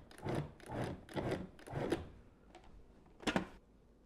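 Food processor pulsed in short bursts, about two a second, cutting shortening into flour to make crumbly pie dough. A single sharp click follows a little after the pulsing stops.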